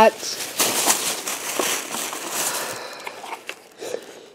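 Thin plastic shopping bag rustling and crinkling as items are pulled from it, dying away about three seconds in, with a few light clicks of handling after.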